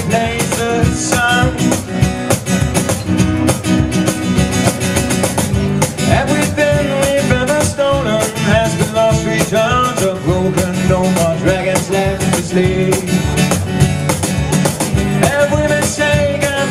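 Live acoustic music: an acoustic guitar strummed over a steady cajon beat with a small cymbal.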